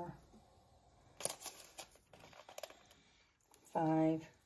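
Light clicks and taps of a small metal measuring spoon against the hydroponic reservoir as powdered fertilizer is spooned into the water, the sharpest tap a little over a second in, then a few fainter ones. A short voiced sound near the end.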